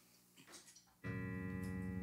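Near silence, then about a second in a keyboard chord starts suddenly and is held steady, opening the next song.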